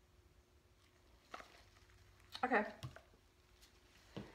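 Quiet room tone with a faint steady hum, a short soft click about a second in, then a woman says "Okay."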